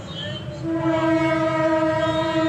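One long, steady sung note, held without wavering from about half a second in.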